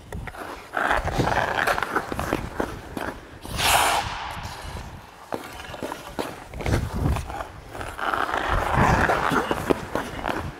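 Hockey skate blades scraping and carving the ice during backward skating, a pivot and push-off, with a sharp hissing scrape about three and a half seconds in and a second stretch of scraping near the end.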